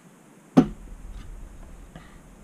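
Machined aluminium pump-body part knocked once against metal, a sharp clack about half a second in, followed by faint handling and rubbing as the parts are moved about.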